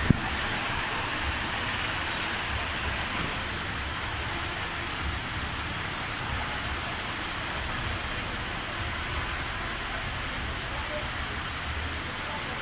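Steady moderate rain falling on a wet street and roofs, an even hiss.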